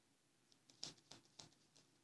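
Faint light flicks and snaps of a deck of tarot cards being shuffled by hand, a few of them around the middle.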